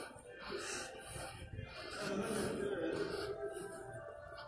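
Piped-in background music playing through the mall, with a voice heard faintly alongside it.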